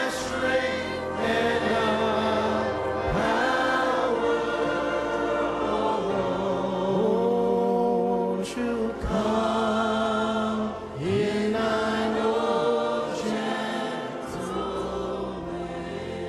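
A congregation singing worship music together in chorus, with long held notes that waver slightly.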